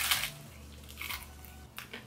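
A bite into a puffed rice cake topped with tuna salad: a sharp crunch at the start, then quieter chewing crunches about a second in and again near the end.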